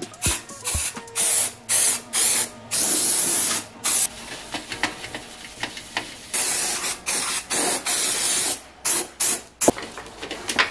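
Aerosol degreaser hissing from a spray can onto a steel armour piece in a series of short bursts, the longest about a second. A few sharp knocks near the end.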